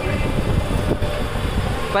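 Steady low rumbling noise of wind and motion buffeting the phone microphone on a turning Ferris wheel, with faint voices behind it.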